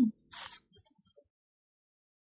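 A short, soft hiss-like burst about a third of a second in, then a faint tick or two, and then silence.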